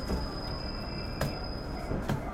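KiHa 110 series diesel railcar rolling on steel rails as it slows into a station, with a steady high-pitched squeal from the wheels that cuts off near the end. A low rumble runs underneath, and a single sharp click comes a little past halfway.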